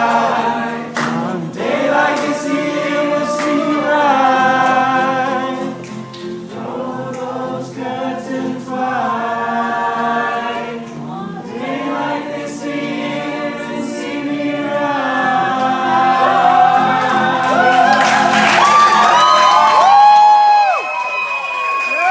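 Live duet singing with strummed acoustic guitar, two voices together on a slow pop song. Near the end the guitar drops out, leaving the voices on higher, sliding held notes.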